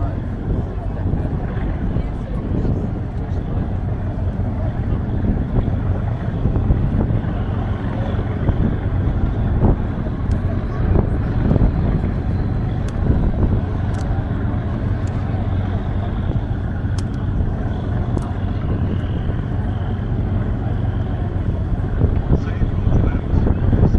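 Steady low drone of a passenger ferry's diesel engine running, with indistinct passenger chatter over it.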